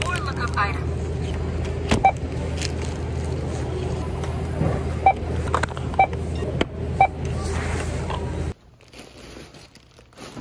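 Checkout scanner beeping as items are scanned: four short, sharp beeps a second or so apart, with the odd knock of goods on the counter, over the steady hum of a large store. Near the end the sound drops away to a much quieter room.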